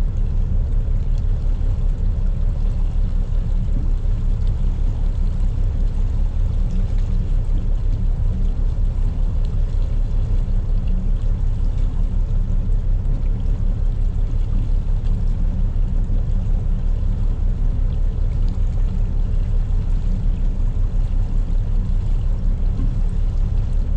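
A 40-year-old trawler's diesel engine running steadily while the boat is underway: a deep, even rumble with a quick, regular pulse.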